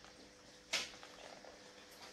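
A single short rustle about three-quarters of a second in, as the leather-backed kydex holster is handled against clothing at the waist, over a faint steady hum.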